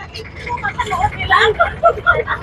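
People's voices chattering inside a moving passenger jeepney, over the steady low rumble of its engine and the road.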